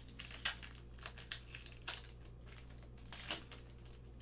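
Foil wrapper of a trading-card pack being torn open and crinkled by hand: a run of sharp crackles, the loudest about half a second in and again past three seconds.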